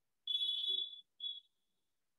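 Two high-pitched beeps, a longer one and then a short one.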